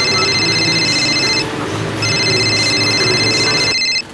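Phone ringing with an electronic trilling ring: two rings of about two seconds each with a short gap between, over a low steady hum.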